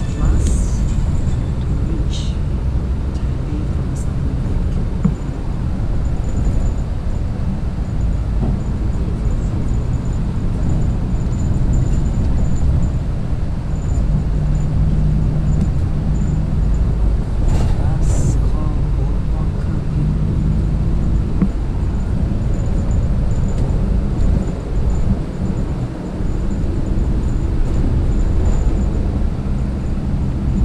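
Coach engine and road noise inside a moving bus cabin: a steady low rumble with an engine hum, broken by a few brief clicks and rattles.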